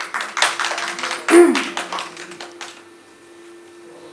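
Short applause from a small audience, fading out after about two and a half seconds, with a brief voice at about a second and a half in.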